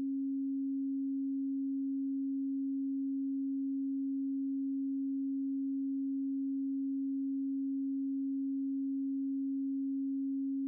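A steady 272 Hz pure tone: an alternating isochronic tone at an alpha-range rate that switches quickly back and forth between the left and right speakers.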